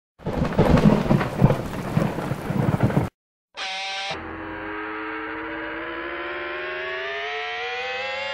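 Crackling thunder-and-lightning sound effect for about three seconds, cut off abruptly. After a short silence comes a brief tone, then a sustained tone with overtones that slowly rises in pitch: the lead-in to a music track.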